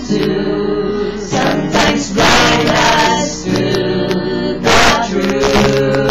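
A small mixed group of men and women singing together in harmony, holding long sustained notes.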